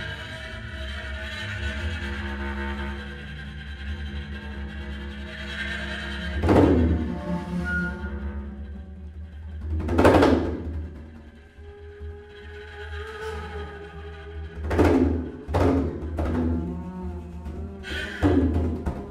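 Free improvised music: held wind tones from a transverse flute over a low double-bass drone, broken by a handful of loud, deep tabla strikes, the heaviest about six and ten seconds in and a cluster near the end.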